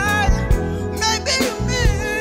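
A young man singing a song into a handheld microphone, holding a note and then moving through shorter phrases, backed by a live band with bass and drums hitting about twice a second.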